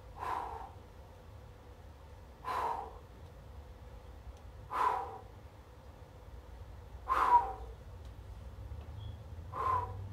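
A man's heavy breaths while he holds a push-up position plank, five in all, evenly spaced about every two and a half seconds: steady breathing kept up under the strain of a static hold with the core braced.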